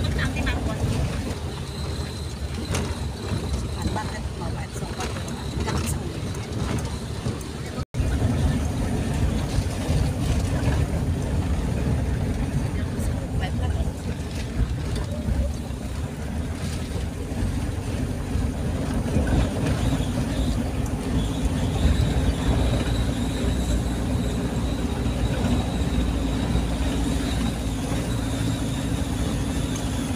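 Steady vehicle engine and road noise heard from inside the cabin while driving, a continuous low rumble that cuts out for an instant about eight seconds in.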